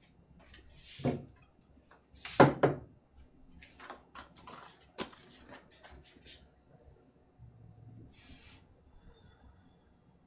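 Stoneware pottery pieces being picked up and set down on a wooden counter and shelves: a string of light knocks and clinks, the loudest about two and a half seconds in.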